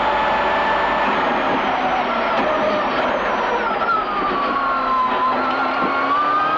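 Subaru Impreza WRC's turbocharged flat-four rally engine heard from inside the cabin, its revs falling steadily over about four seconds as the car brakes and slows for a called braking point, then rising again near the end.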